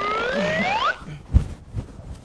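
A rising cartoon-style whistle sound effect over a hiss, gliding upward for about a second and sweeping up sharply at the end, then a single thump.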